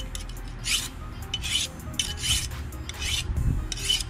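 Long fillet knife blade drawn stroke after stroke across a handheld sharpening stone, a rasping scrape repeating about twice a second as the blade is sharpened.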